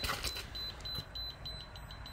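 Electronic alarm from the water-cooling loop's flow meter, giving a rapid, steady run of short high-pitched beeps, several a second.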